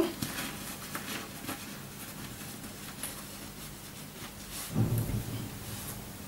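Faint rustling and small clicks of a cotton headscarf and plastic shower caps being tucked and smoothed on the head, then a short low thump about five seconds in.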